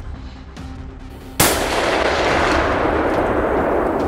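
A single gunshot about a second and a half in, sharp and loud, followed by a long rolling echo that fades slowly through the woods.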